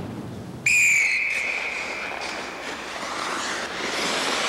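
A referee's whistle blows one long, shrill blast, starting about half a second in and held for over a second, stopping play in an ice hockey game. Steady arena crowd noise runs underneath.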